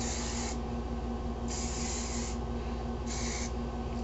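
Aerosol can of Dove hairspray sprayed onto teased hair in three bursts of hiss: a short one at the start, a longer one of nearly a second in the middle, and a short one near the end.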